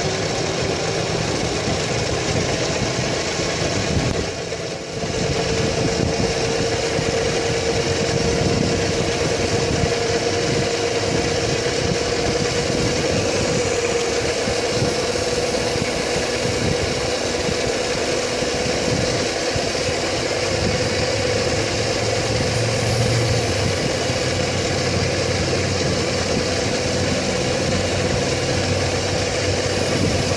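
Electric scooter's motor whining as it rises in pitch over the first five or six seconds and then holds one steady note at cruising speed, under heavy wind noise on the microphone.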